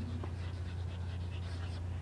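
Chalk scratching on a chalkboard in short faint strokes as a word is written, over a steady low hum.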